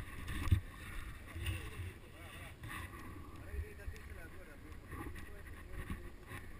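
Low rumbling and scattered bumps from a body-mounted camera rubbing and knocking as the climber moves on rock, with wind on the microphone.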